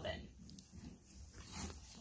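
Faint sounds of a pony nosing in loose hay beside the microphone: soft rustling and snuffling.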